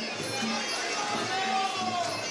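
Traditional Muay Thai fight music (sarama): a Thai oboe (pi) plays a wavering melody over a regular drum beat, ending on a long held note.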